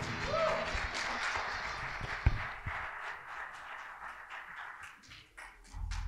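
A congregation applauding a band that has just finished a carol, with a brief whoop near the start; the clapping fades out over about five seconds, with one sharp thump about two seconds in.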